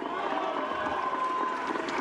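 Audience applauding, a dense patter of many hands clapping, with a few voices in the crowd mixed in.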